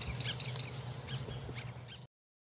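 Outdoor ambience of birds chirping in short, scattered calls over a low steady hum.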